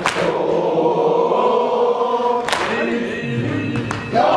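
A congregation of men chanting a latmiya refrain together in long held notes, with three sharp slaps cutting through, near the start, halfway and at the end.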